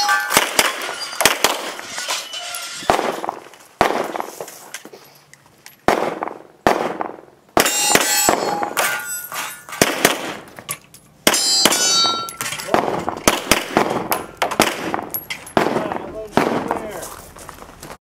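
A string of handgun shots at irregular intervals, several of them followed by the short metallic ring of steel targets being hit.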